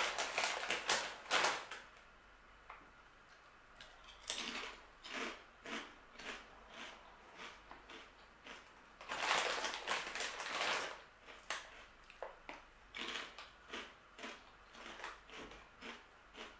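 Crinkling of a plastic snack bag as a hand reaches in, then the crunching of protein nachos being chewed, in a run of short irregular crunches with a louder stretch about nine seconds in.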